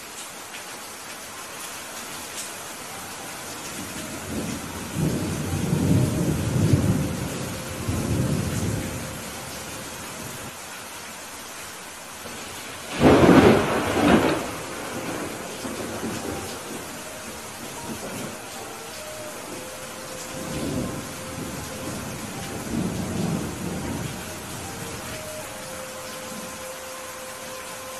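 Heavy rain falling steadily, with thunder: low rolling rumbles about five seconds in, a loud, sharper thunderclap about thirteen seconds in, and more rumbles around twenty seconds in.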